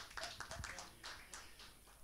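Faint scattered taps and knocks from a handheld microphone being handled as it is passed along, dying away in the second half.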